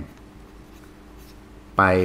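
A pen writing on paper: faint scratching of handwritten strokes. Near the end a man's voice begins a word.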